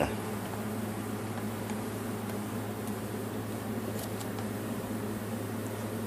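Steady low electrical hum and fan-like hiss of a small workshop room, with a faint click or two about halfway through as a water pump seal is pushed home by hand.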